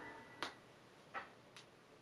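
Faint ticks of vinyl surface noise picked up by a turntable stylus in the quiet groove between tracks, three soft clicks less than a second apart, as the last notes of the previous track fade out at the start.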